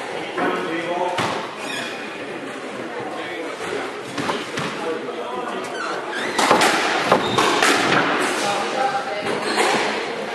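Squash rally on an indoor court: sharp knocks of the ball off rackets and walls, coming thickest and loudest in a quick run of shots about six to eight seconds in.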